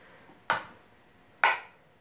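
Two sharp taps about a second apart, from a makeup brush knocking against a plastic powder-blush palette while powder is picked up on the brush.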